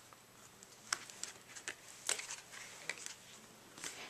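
Faint, scattered ticks and rustles of cardstock being pressed and shifted by hand on a craft work mat.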